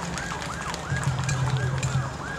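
High warbling ululation from the audience, its pitch rising and falling about four times a second over faint crowd noise, in response to a call to applaud.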